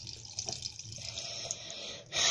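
A thin stream of tap water running from a kitchen faucet into a stainless steel sink: a steady, light splashing hiss.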